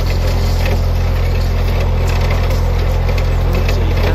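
Narrowboat engine running steadily at low speed while the steel hull crunches and cracks through sheet ice, a continuous crackle of breaking ice over the engine's low hum.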